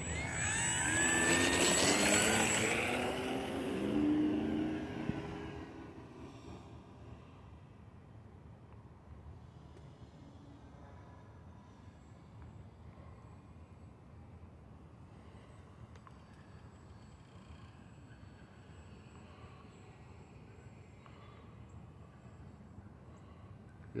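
HobbyZone Carbon Cub S+ RC plane's electric motor and propeller whining up in pitch as the throttle is opened for takeoff. Within about five seconds it fades to a faint distant drone as the plane climbs away.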